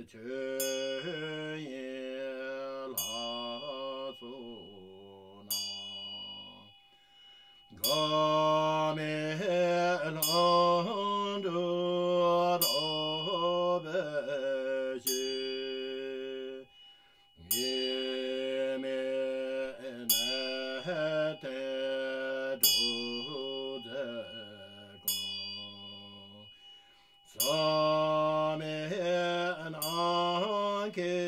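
Tibetan Buddhist chanting of a long-life practice: voices sing a slow melodic chant in long phrases with gliding pitch, pausing briefly about seven seconds in, about seventeen seconds in, and near the end. A small bell is struck every second or two, ringing brightly over the voices.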